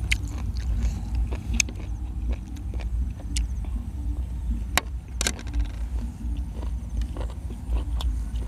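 Close-up chewing and crunching of spicy golden apple snail salad eaten with sticky rice, with several sharp crunches or clicks, over a steady low rumble.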